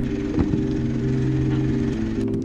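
A pickup truck's engine running steadily as the truck crawls over a rocky gravel track, with tyres rolling on loose stones.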